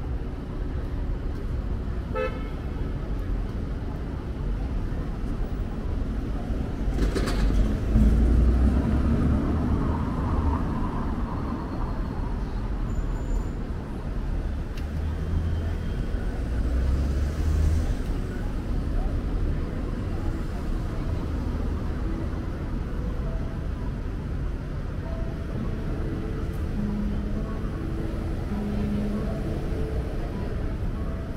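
Street traffic: cars moving slowly along a paved road with a steady low rumble, loudest as one passes about eight seconds in. A short car horn toot sounds about two seconds in.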